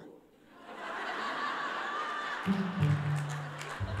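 An audience laughs. About two and a half seconds in, a bass guitar comes in with a few low held notes that step down in pitch.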